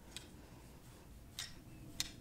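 Yarn being wrapped around a plastic pom-pom maker, heard faintly, with two light plastic ticks about a second and a quarter apart.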